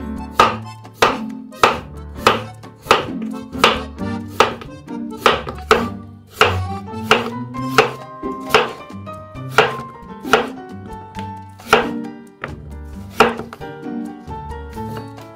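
A kitchen knife slicing peeled raw potatoes into rounds on a wooden cutting board: each cut ends in a sharp knock of the blade on the board, in an even rhythm of about three cuts every two seconds. Background music plays underneath.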